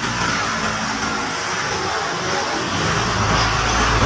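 Steady highway traffic noise, joined about three seconds in by the low drone of a truck engine running close by, which grows louder.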